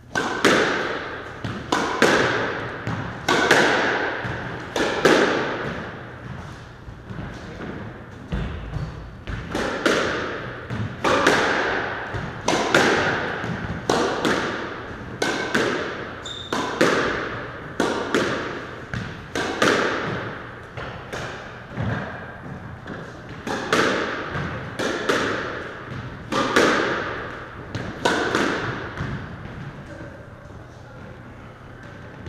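Squash rally: a steady run of sharp ball strikes off the racket and the walls, roughly one to two a second, each trailing an echo in the enclosed court.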